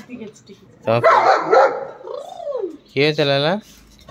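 Pet dogs barking, a German Shepherd among them: a loud run of barks about a second in, then one longer bark just after three seconds.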